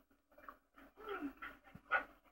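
A small dog panting faintly in a few short bursts while it plays, heard through a television's speaker.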